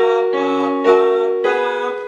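Piano playing a short figure of two-note chords alternating with a lower single note, struck about every half second, each ringing out and fading.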